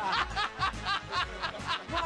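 A man laughing heartily in a quick run of short "ha" bursts, about four a second, close to a studio microphone.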